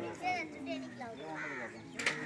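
Men's voices talking in the open, with a crow giving a harsh caw about one and a half seconds in.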